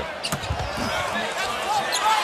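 Basketball game sounds on a hardwood court: the ball bouncing and short sneaker squeaks over a steady arena crowd.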